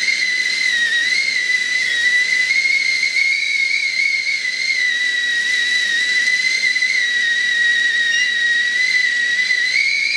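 Enamel stovetop whistling kettle at the boil, giving one continuous high whistle that wavers slightly in pitch, with a hiss of steam underneath.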